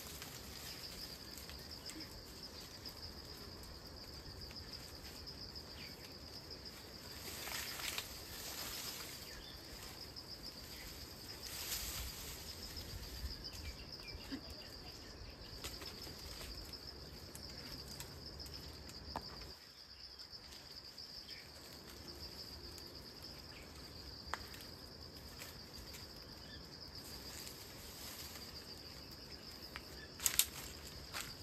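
Steady, high-pitched drone of insects calling without a break, with a couple of brief louder rustles about a quarter and a third of the way in, and a few faint clicks.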